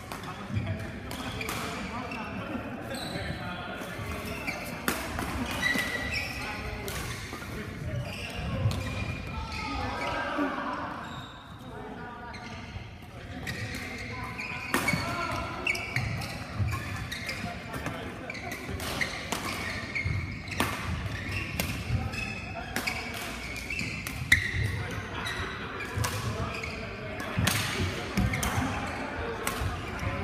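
Sharp shuttlecock hits off badminton rackets, scattered and irregular, from play on the surrounding courts, over people talking in a large, reverberant sports hall.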